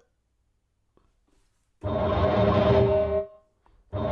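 A sampled Dulcitone melody from Skybox Audio's Hammers + Waves pack, played through the Drop Designer Kontakt instrument with its Inception effect and sub layer on, triggered from a trimmed start point. After about two seconds of near silence, one short dense phrase with two held notes over heavy bass sounds for about a second and a half and is cut off.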